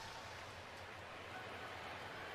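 Faint, steady murmur of a baseball stadium crowd.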